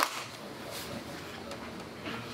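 A single sharp hand clap right at the start, then low room noise of a mat room.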